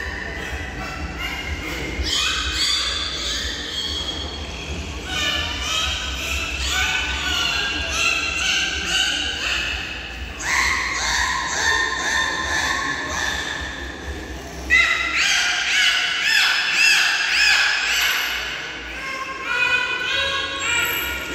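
Dolphins vocalizing on cue, a run of high squeaky whistles from several animals at once that come in bursts. Near the end the whistles are loudest, with rising-and-falling arched calls.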